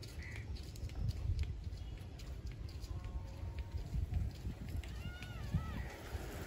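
Faint outdoor background: a low rumble with a few distant bird calls, the clearest of them near the end.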